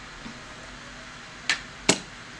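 Two sharp clicks near the end, about half a second apart, the second one louder, over quiet room tone: makeup packaging being handled and set down on a hard surface.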